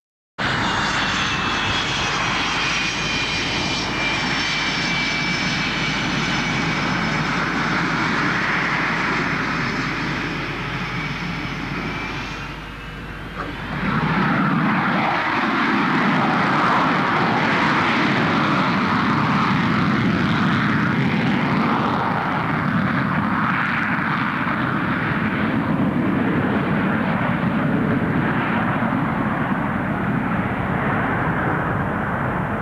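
Jet engines of Canadian CF-18 Hornet fighters. For the first dozen seconds a high whine of several whistling tones slides slowly down in pitch over the engine roar. After a short dip about 13 seconds in comes a louder, deeper, steady jet roar that lasts to the end.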